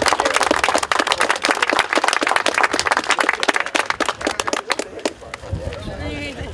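Small crowd applauding: many hands clapping irregularly, thinning out near the end.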